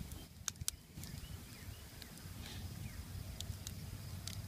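A sharpened wooden stick pressed into a raw egg's shell, giving a few faint clicks as it works at the shell, over a quiet outdoor background with faint chirps.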